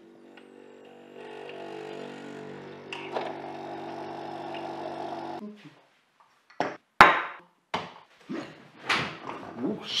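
Nespresso Essenza capsule machine's pump running with a steady hum as it brews an espresso, a hissing pour joining it about three seconds in, then cutting off abruptly. A couple of seconds later come several sharp clinks and knocks of a coffee cup and saucer being set down on a wooden table, the loudest about seven seconds in.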